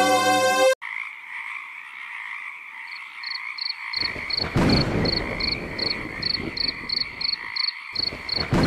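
String music cuts off abruptly just under a second in and gives way to a nature recording of frogs and insects: a steady high chirring with a short high call repeating about three times a second. From about halfway through, a low rushing noise joins in and rises and falls.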